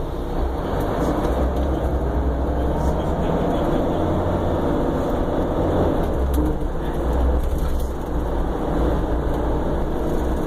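Cabin sound of a 2015 Prevost commuter coach under way: a steady low engine drone with road and tyre noise.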